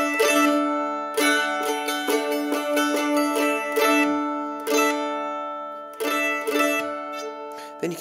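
Mandolin strummed several times, each chord left ringing: a D major chord moving to D suspended second, the first string left open, and resolving back to D when the ring finger returns.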